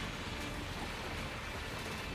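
Steady noisy rush with a low rumble underneath, the anime soundtrack's effects for rubble and dust in a destruction scene.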